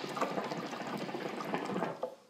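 Water bubbling steadily in a Venture hookah's glass base as a draw is pulled through the hose, with air forced through a non-diffused downstem. The bubbling lasts about two seconds and stops just before the end.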